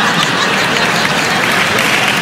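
Theatre audience applauding steadily.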